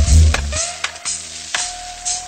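Dub reggae playing from a dubplate record, with a heavy bass line that drops out about half a second in. Gliding synth effect tones and a held tone continue over steady hiss and sharp clicks of record surface noise.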